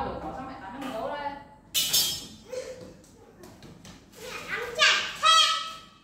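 A young child's voice calling out in short bursts, ending in a loud, drawn-out high call near the end.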